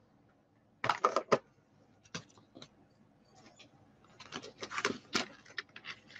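Scattered light clicks and clinks of hands handling card and tools on a craft desk, with beaded and metal bracelets jingling on the wrist. The clicks come thickest about four to five seconds in.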